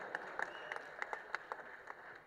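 Faint, scattered audience applause: sparse handclaps at an irregular pace over a low murmur of room noise, during a pause in a speech.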